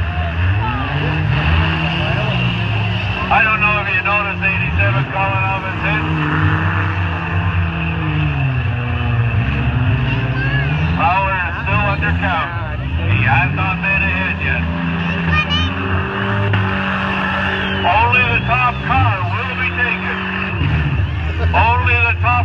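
Several demolition derby cars' engines running and revving at once, their pitch rising and falling, with voices over them.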